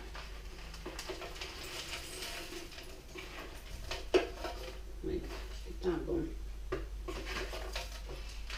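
A spoon scraping and knocking against a plastic tub as dark crushed material is spooned into a blender jar: a scatter of light clicks and taps, the sharpest a little after four seconds in.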